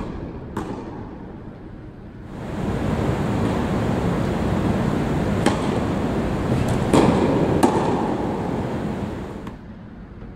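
Tennis balls being struck by rackets and bouncing on an indoor hard court during a rally: a sharp pop just after the start, then three more in the second half. From about two seconds in, a loud, even rushing noise swells up under the hits and fades out near the end.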